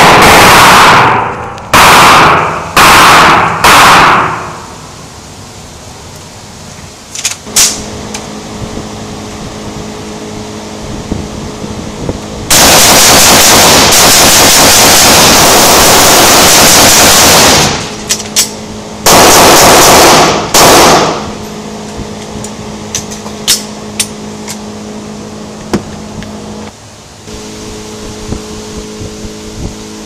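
Rifle gunfire in a reverberant indoor range, loud enough to distort: several quick bursts in the first four seconds, a long unbroken stretch of about five seconds in the middle, and another burst soon after. Fainter single shots ring out in the quieter gaps.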